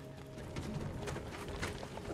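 Horses' hooves knocking and shuffling irregularly on hard dirt, under a quiet music score.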